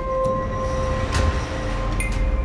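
Cinematic sound design: a low rumble under a steady hum tone, with a short whoosh about a second in.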